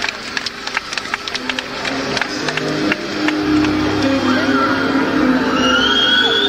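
Live band music with crowd noise from a concert recording. It opens with scattered sharp claps, then sustained keyboard chords come in, with a bass line joining about three seconds in as the music grows louder. A high rising call is heard near the end.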